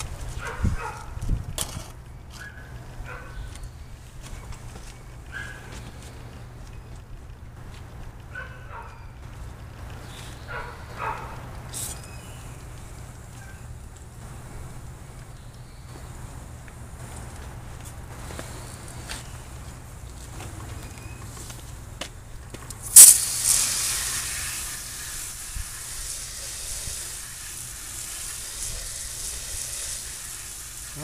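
Faint scattered clicks and handling sounds, then a hose spray nozzle opens with a sudden loud burst and keeps spraying with a steady hiss. The water is rinsing baking-soda paste and corrosion residue off a car battery and its terminals.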